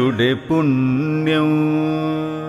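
Male voice singing a Malayalam light devotional song: a short ornamented, wavering phrase, a brief break, then one long held note from about half a second in.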